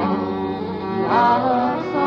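Folk band music: a fiddle playing over acoustic guitar accompaniment, with a note sliding upward about a second in.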